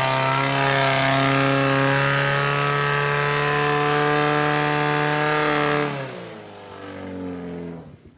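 Portable fire pump engine running flat out at a steady high pitch while it drives water through the attack hoses, then dropping in revs and falling in pitch about six seconds in.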